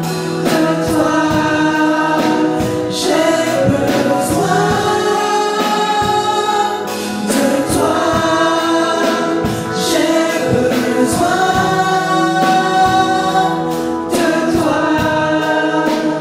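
Small gospel choir of female and male voices singing a worship song in harmony into microphones, with long held notes.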